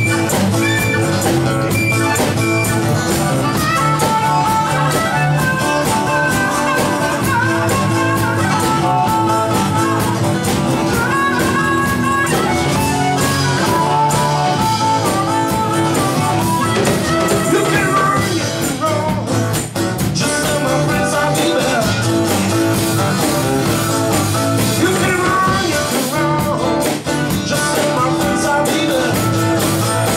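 Live acoustic blues band playing an instrumental passage: acoustic guitar and upright double bass under a harmonica solo with bending notes.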